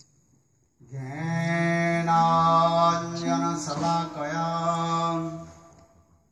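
A man's voice chanting a long, drawn-out sung phrase into a microphone, a devotional chant. It starts about a second in, holds a few long notes with small steps in pitch, and trails off near the end.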